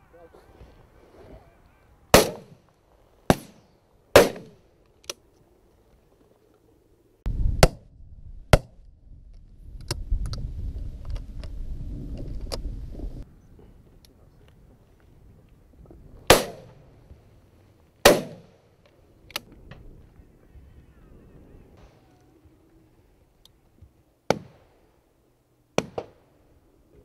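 Shotguns firing at driven red grouse: about a dozen shots spread across the time, the loudest close at hand and often a second apart or so, others fainter from neighbouring butts. There is a few seconds of low rumble in the middle.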